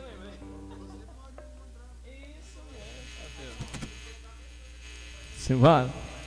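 Steady low electrical hum from the amplified sound system under faint talk, with a man's voice breaking in loudly for a moment near the end.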